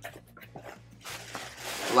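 Tissue paper rustling and crinkling as it is handled inside a cardboard box, growing louder from about a second in, over a faint steady low hum.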